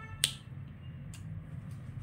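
A felt-tip marker being handled: one sharp click about a quarter of a second in, then two fainter clicks, over a low steady hum.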